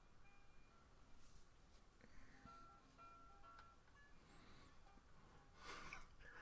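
Very faint playback of a live 1960s solo acoustic blues guitar recording, single picked notes coming through thinly over the call audio. A brief noisy rush near the end is the loudest thing.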